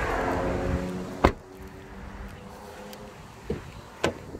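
A car's rear passenger door is shut with a single solid thump about a second in, over a fading background of traffic. A lighter knock follows near the end.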